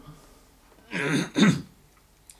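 A man clearing his throat about a second in, a short two-part 'ahem'.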